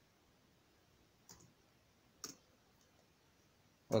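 A few sharp, separate computer keyboard keystroke clicks about a second apart, the last one near the end the loudest.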